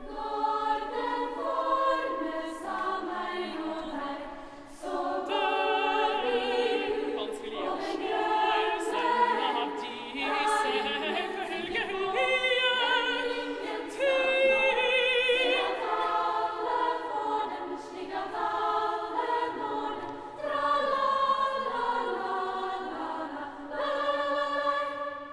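Girls' choir singing unaccompanied, holding chords of several voices that shift every second or two, some voices wavering with vibrato in the middle.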